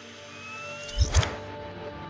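Film-trailer score played backwards: a sustained low drone with a pair of deep heartbeat-like thumps about a second in. Over it, a thin electronic whine rises and ends in a short crackling burst, the power-up sound of an Iron Man helmet lighting up.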